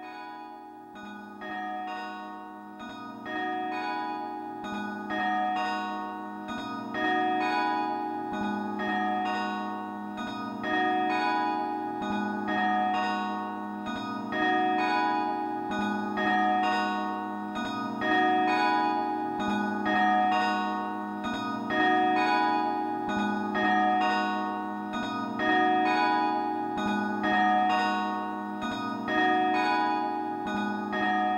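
Soundtrack of bell-like chimes ringing a repeating pattern of struck notes, fading in over the first few seconds and then holding steady.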